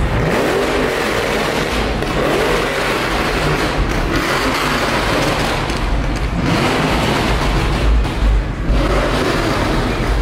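Car engines running and revving as custom cars roll by, with music playing.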